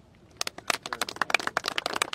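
A group of people applauding, the clapping starting about half a second in and going on as a dense, irregular patter.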